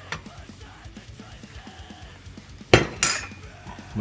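A stainless steel saucepan of boiling water being moved from the stove to the countertop: faint clinks, then a loud metallic clank as it is set down nearly three seconds in, with a second knock just after.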